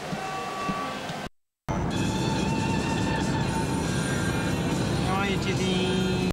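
Inside a moving car: steady engine and road rumble with music playing over it. It begins after a brief dropout to silence about a second and a half in, following a moment of indoor room sound.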